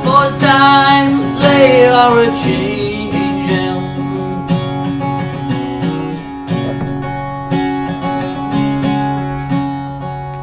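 A man sings with an acoustic guitar, holding out the last sung line for about three and a half seconds. After that the acoustic guitar is strummed alone in a steady rhythm between verses.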